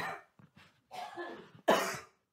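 A person coughing close to the microphone: a short cough at the start and a louder, harsher one near the end, with a throaty voiced sound between them.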